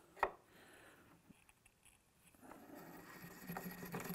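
Forster Original Case Trimmer being hand-cranked, its cutter scraping and shaving brass from a rifle case mouth. Faint at first, the rough scraping grows steadily louder from about halfway through.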